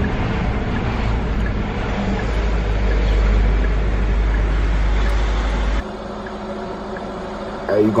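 Low road and engine rumble inside a moving car's cabin, steady; about six seconds in it cuts off abruptly to a quieter, thinner hum.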